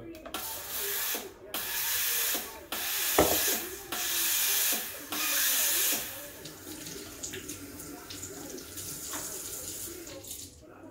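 Breville Oracle's steam wand purging itself after frothing milk: about five loud hissing bursts of steam over the first six seconds, with a knock about three seconds in, then a fainter hiss and a few small clicks.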